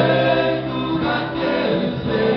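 Live acoustic music: several men's voices singing together in harmony, holding long notes over strummed acoustic guitars.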